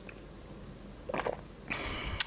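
A person drinking a sip of wine from a cup: a short gulp about a second in, then a breathy exhale near the end.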